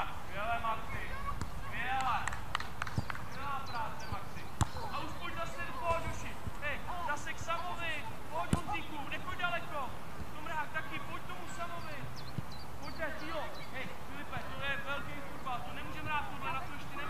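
Children's voices calling and shouting on a football pitch, with a few sharp thuds of a football being kicked, the loudest about four and a half and eight and a half seconds in.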